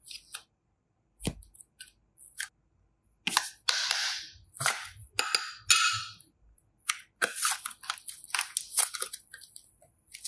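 Modeling clay and slime handled by hand over a clear bowl: a few sharp clicks, then a run of rustling, crinkly handling noise in the middle. Near the end come dense crackly snaps as teal slime is pulled and stretched.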